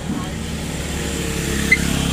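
A motor scooter's engine running as it passes close by, growing louder toward the end.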